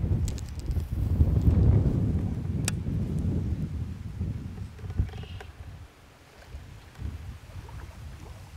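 Wind buffeting the microphone as a low, uneven rumble, strongest in the first few seconds and dying down after about four, with a couple of faint sharp clicks.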